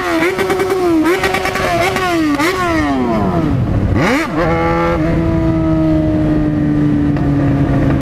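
Yamaha XJ6 motorcycle's inline-four engine under way, heard from the rider's seat. The note wavers with small throttle changes, falls away for about a second, jumps back up with a quick rev about four seconds in, then settles into a steady, slowly falling note.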